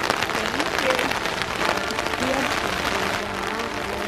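Rain pattering on an umbrella: a dense crackle of many small drops, with faint voices underneath.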